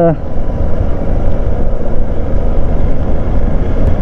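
Hero Xpulse 200 single-cylinder motorcycle riding along at about 35 km/h, a steady loud rush of engine and wind noise on the action camera's microphone.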